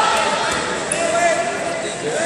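Indistinct voices of people talking and calling out in a large hall, with two short, sharp knocks in the first half-second.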